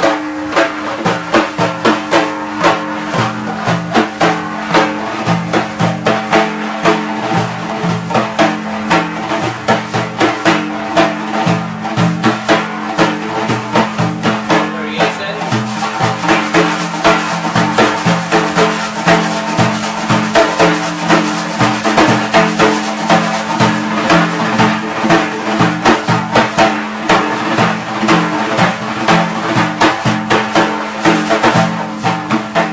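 Several frame drums, led by a Persian daf, played together in a steady Sufi rhythm in four ("one, two, and three, four"). Loud accented strokes come about twice a second, with quicker strokes between them.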